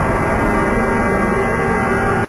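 Loud, steady rumbling drone with many held ringing tones layered over it, as in a film-trailer soundtrack.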